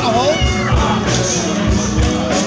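Band music with a steady low beat. In the first second there are a few short calls that glide down and back up in pitch.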